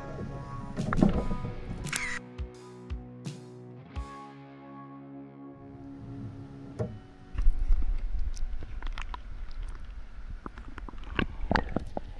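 Background music with sustained tones for the first half. About seven seconds in, it gives way to close water sloshing and splashing with a low rumble and small knocks, as a brown trout is lowered into the river by hand and released.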